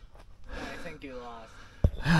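A person's short, falling vocal groan or sigh, fairly quiet, then a single sharp thump just before the end.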